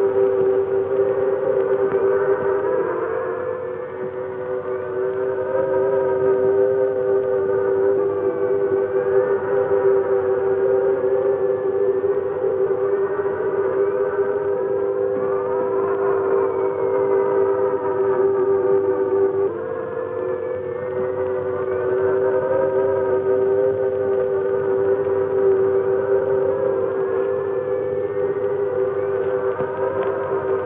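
Eerie electronic sci-fi score: a steady, wavering drone of two held low tones, with higher tones gliding up and down over it like slow sirens. The drone shifts about two-thirds of the way through.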